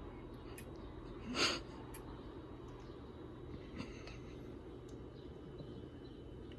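Quiet room tone with a steady low hum. About a second and a half in comes one short sniff through the nose, and a few faint clicks follow later.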